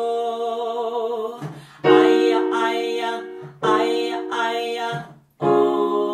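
A woman singing "aia, aia, aia, ooooh" in held notes with vibrato over an electric keyboard. The keyboard chords are struck anew three times, about every two seconds, with short gaps between phrases.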